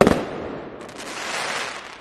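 Electric crackle sound effect of an animated logo sting: a sudden loud hit, then a sizzling, crackling rush that swells again about halfway through and starts to fade near the end.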